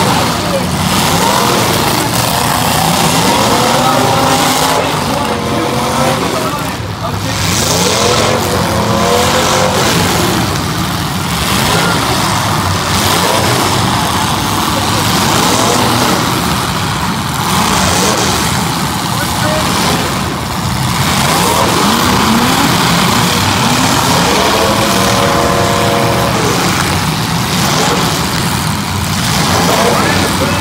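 Engines of several full-size demolition derby cars running and revving, their pitch rising and falling again and again over a steady loud din.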